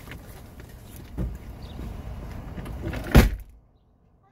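Someone climbing across and out of a car: rustling and shifting with a knock about a second in, then a car door slammed shut a little after three seconds, the loudest sound.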